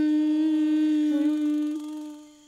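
A voice humming one long steady note, fading out in the second half.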